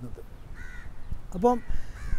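A bird calling once, briefly, followed by a short syllable of a man's speech.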